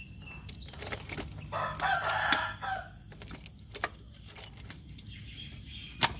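A bunch of keys jangling and clicking as a key is worked in a motorcycle's seat lock. A rooster crows once, from about one and a half seconds in to nearly three seconds.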